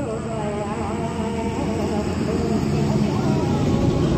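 A person's voice over a steady low rumble that grows slightly louder toward the end.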